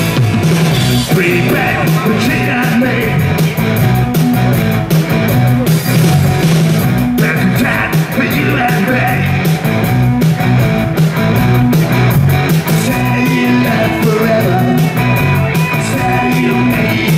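Live rock band playing at full volume: electric guitar, a steady drum beat and a singer's voice coming in and out in stretches.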